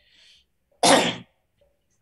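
A person coughs once, sharply and loudly, about a second in, after a faint breath in.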